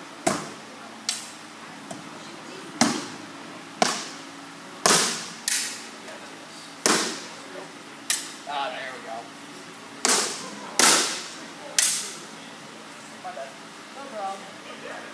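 Practice weapons striking a shield and each other in a sparring exchange: about a dozen sharp, irregularly spaced cracks, each with a short echo.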